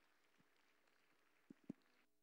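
Near silence: faint room noise with a few soft knocks, two of them close together about a second and a half in.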